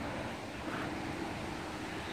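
Steady outdoor background noise, a low rumble and hiss, with a faint steady hum coming in under a second in.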